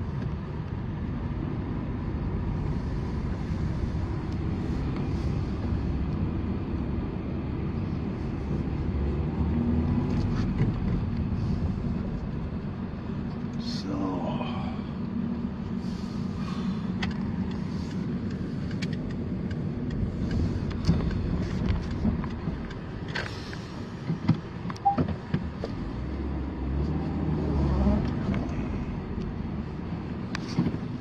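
Car driving, heard from inside the cabin: a steady low rumble of engine and tyres on the road, with a few sharp knocks about two-thirds of the way through.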